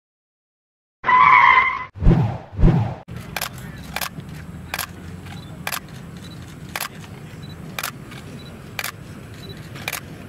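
A short loud electronic tone, then two loud thuds, then a steady outdoor crowd background in which a camera shutter clicks about once a second.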